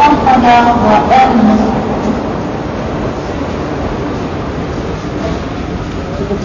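Railway station and train noise: a steady rumble and hiss, with voices heard briefly near the start.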